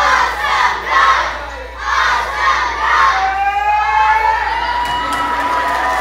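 A group of children shouting and cheering in several bursts. About three seconds in comes one long drawn-out shout, slowly rising in pitch, which cuts off suddenly at the end.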